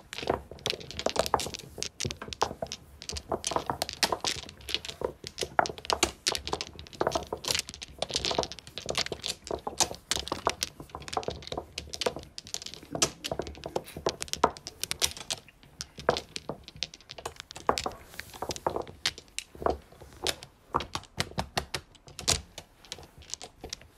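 Mahjong tiles clacking against one another on a felt mat, in a dense, irregular run of sharp clicks.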